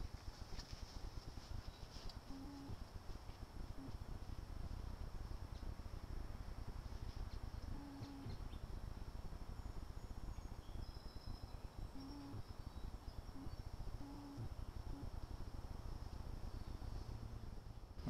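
Faint backyard ambience picked up by a small camera's built-in microphone: a steady low rumble and a thin, steady high tone, with a few short, low calls and faint chirps scattered through.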